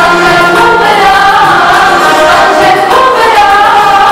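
A song sung by a group of voices in chorus, melody moving through long held notes at a steady, loud level.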